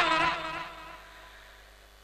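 A man's amplified voice ends a shouted phrase and dies away through the loudspeakers over about a second. After it a faint steady electrical hum and whine from the sound system remains.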